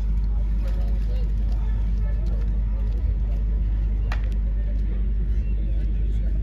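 Stadium background: faint talk of nearby spectators over a steady low rumble, with one sharp click about four seconds in.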